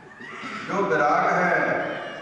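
A man's voice speaking into a microphone through a public-address system. After a short pause it rises into a loud, drawn-out, high-pitched stretch of declamation.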